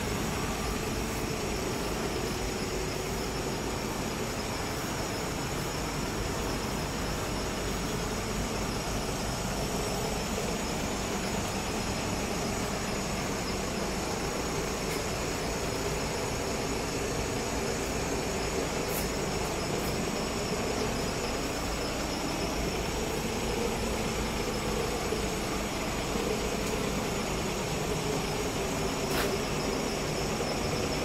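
Steady vehicle engine noise with a constant hiss over it, unchanging throughout, broken only by a couple of faint ticks.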